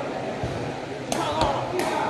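Sepak takraw ball struck several times in quick succession, a series of three sharp smacks in the second half, with a softer thud about half a second in, over a crowd's chatter in a large hall.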